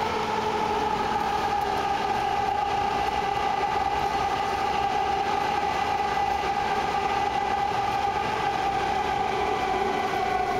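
BART train running through a tunnel, heard from inside the car: a loud, steady rush of track noise with a high whine of several tones that slowly drift lower.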